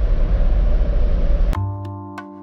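Wind buffeting the microphone on an open deck, a loud uneven low rumble, cut off abruptly about one and a half seconds in. Music with held notes and sharp plucked attacks then starts.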